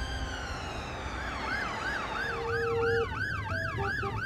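Ambulance siren on yelp: fast rising sweeps repeating about three times a second, starting about a second in. Before that, a lower, slowly falling tone fades away.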